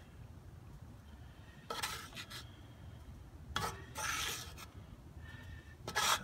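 Wooden spoon scraping and stirring buttered breadcrumbs across the bottom of a cast-iron Dutch oven: two short, faint, raspy scrapes, about two seconds in and again near four seconds.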